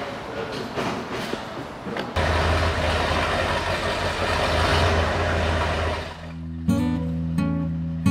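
A fire truck's engine rumbling, coming in suddenly about two seconds in and running steadily for about four seconds before it fades. Acoustic guitar strumming starts near the end.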